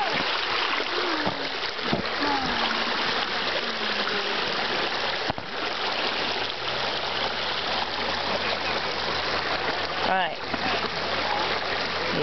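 Creek water running steadily over a small waterfall, an even rushing wash.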